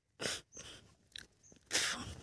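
Several short animal calls, brief and separate, the loudest near the end.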